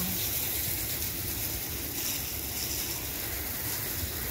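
Steady rushing hiss of water spraying onto floor tiles, over a low rumble.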